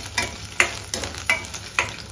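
A spatula stirring and scraping sliced shallots as they fry in oil in a stainless steel pan, about five strokes over a steady sizzle.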